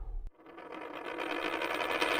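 End-of-episode outro sound effect: a falling electronic sweep ends in a click, then a buzzing, rattling mechanical-sounding noise builds steadily louder.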